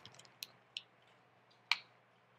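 A few short, light clicks of small plastic toy parts being handled, the loudest about three-quarters of the way through, with quiet between.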